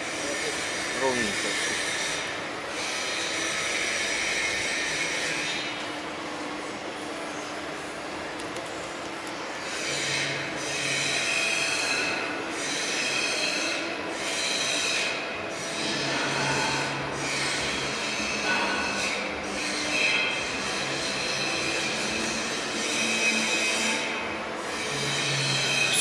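Electric multi-rip circular saw machine (Perun MDS-170, twin 45 kW motors) sawing a squared cant into a beam and edged boards: a steady high-pitched whine of the blades in the cut, dipping briefly now and then, over a lower motor hum.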